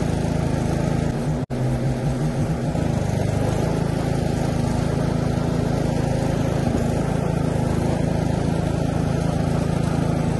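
Westwood S1300 ride-on mower's petrol engine running steadily and loud as the mower drives along. The sound cuts out for an instant about a second and a half in.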